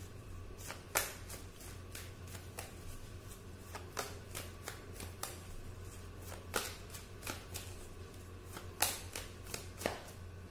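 A tarot deck being shuffled by hand, the cards clicking and snapping irregularly, with sharper snaps about a second in, at about four seconds and near the end.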